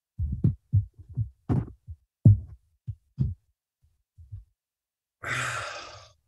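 A run of short low thuds over the first three seconds, then a man's long sigh into the microphone near the end.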